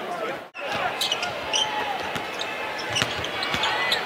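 Live basketball court sound: a ball dribbling on the hardwood amid a background of arena voices, after a brief dropout about half a second in.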